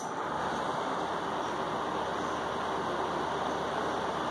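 A steady, even rushing noise with no distinct knocks or voices.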